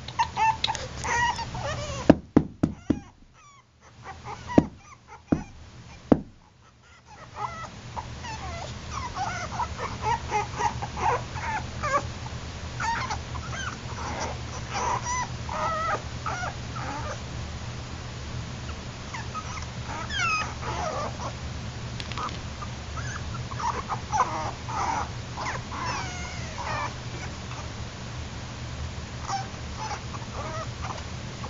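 Yorkshire Terrier puppies whimpering, with many short, high-pitched calls throughout. Several sharp knocks come in the first few seconds.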